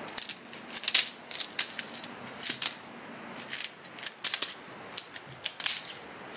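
Kitchen scissors snipping through a rubber-banded bundle of fresh green flower stems: a series of crisp cuts that come in small clusters about once a second.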